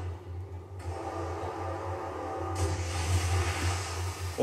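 Anime episode's soundtrack: a steady low rumble with faint music, a hiss of noise over it growing brighter about a second in and again past halfway.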